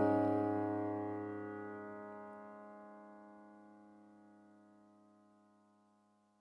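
The song's final chord ringing out on its own and fading away to silence over about five seconds, with no new notes played.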